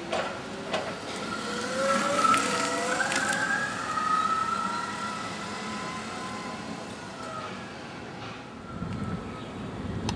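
A pitched whine with several overtones, rising steadily in pitch over the first three to four seconds, then holding level and fading out; a few sharp clicks sound early on.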